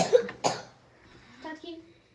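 A child coughing: two sharp coughs, at the very start and again about half a second in, followed by a faint brief voice.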